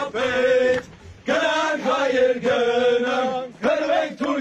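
A group of men singing a chant together in long held notes. The chant breaks off briefly about a second in, then comes back in one long phrase.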